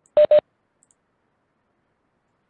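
Two short electronic beeps at the same pitch in quick succession, a video-call notification tone.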